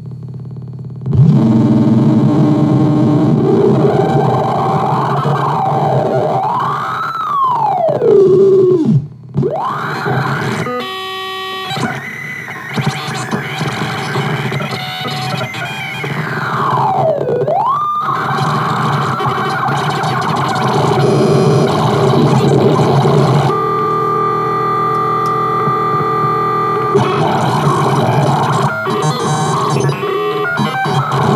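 Error Instruments handheld glitch synthesizer putting out noisy, distorted electronic drones. Its pitch swoops up and down twice, once about a quarter of the way in and again past halfway, with a brief dropout near a third of the way. Later it settles into steadier held tones under the noise.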